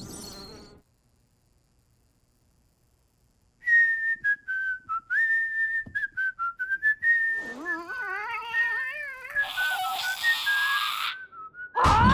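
A cartoon character whistling an idle tune, a thin single-note melody that starts after a few seconds of silence. From about halfway, a second, lower wavering voice-like part joins in, and a sudden loud noise bursts in right at the end.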